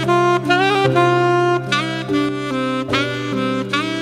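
Saxophone playing a pop-ballad melody over a recorded backing track: a phrase of held notes linked by quick note changes, with a steady low bass line underneath.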